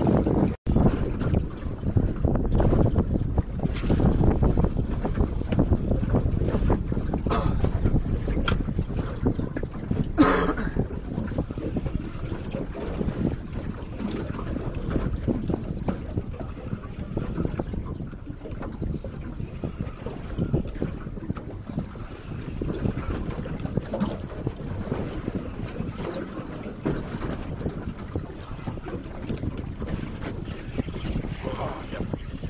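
Wind buffeting the microphone on an open boat deck: a steady low rumble that is strongest over the first ten seconds and then eases. A brief, sharper rushing sound comes about ten seconds in.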